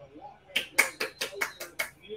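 A person clapping her hands, about seven quick claps at roughly five a second, starting about half a second in.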